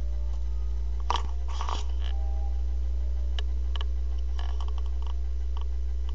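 A steady low hum with a few short clicks and rustles as a webcam is handled and turned. The busiest cluster comes about a second in, and scattered single clicks follow later.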